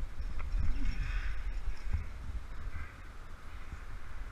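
Rumbling wind and rubbing noise on a helmet-mounted camera as a climber moves up a granite crack. A short harsh, call-like sound comes about half a second in and is the loudest moment.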